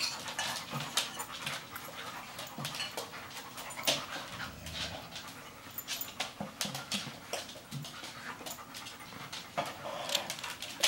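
Dogs panting, with frequent short, sharp clicks throughout.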